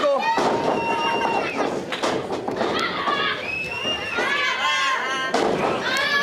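Wrestlers landing on the canvas of a wrestling ring: a few heavy thuds as a shoulder tackle is taken and the match goes on. Voices shout over them.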